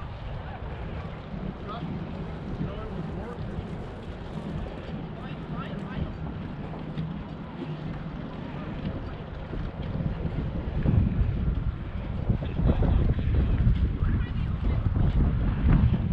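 Wind buffeting the microphone in uneven low gusts, growing stronger about two-thirds of the way through, with faint voices in the background.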